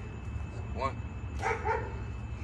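A man's breathless voice calling out a burpee rep count in a few short syllables, over a steady low hum.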